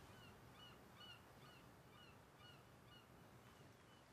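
Faint bird chirping: one short chirp repeated evenly, about two or three times a second.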